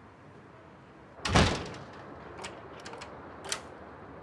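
A car door is pulled shut with one solid slam about a second in, followed by a few faint clicks.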